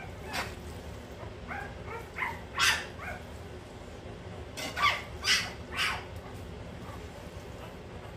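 Hungry puppies crying: short whining yips, scattered at first and then several in quick succession about five seconds in.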